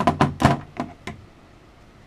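A quick run of sharp clicks and knocks in the first second, then quiet: a Glock 43's steel slide being handled and fitted onto its polymer frame.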